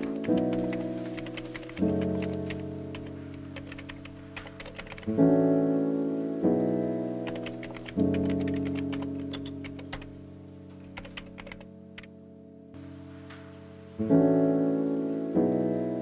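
Lo-fi music of soft keyboard chords, each struck and left to fade, with a new chord every one to few seconds. Over it, quick clusters of computer keyboard typing clicks, pausing briefly about twelve seconds in.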